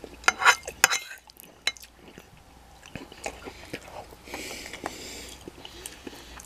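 Metal fork clinking and scraping against a ceramic plate: several sharp clinks in the first couple of seconds, a few more later, then a stretch of scraping about four seconds in.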